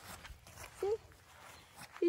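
Mostly quiet outdoor ambience: a woman makes one short vocal sound a little under a second in, with a few faint rustles.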